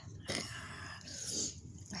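A tabby cat purring close up, a fine even low pulsing with a couple of soft breathy swells.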